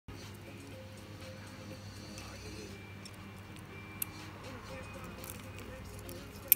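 Faint background music over a steady low hum, with one soft click about four seconds in.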